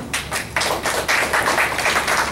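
Small audience clapping: a few separate claps at first, filling out into steady applause about half a second in.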